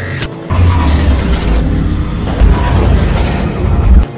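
A loud, deep cinematic boom sets in about half a second in and holds over music, then cuts off suddenly at the end.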